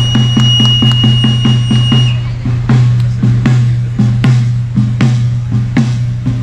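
Andean festival drum (bombo) played by a tamborero, beaten in a steady rhythm of about three strokes a second over a steady low hum. A single high held tone sounds over it for the first two seconds.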